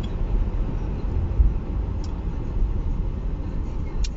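Low, steady rumble of a car heard from inside its cabin.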